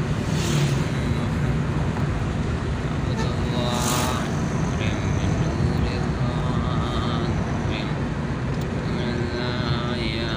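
Steady engine and road noise inside a moving car's cabin, heaviest in the low end. Brief wavering pitched sounds rise over it around four seconds in and again near the end.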